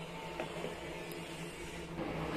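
Quiet background with a faint, steady low hum and no distinct event.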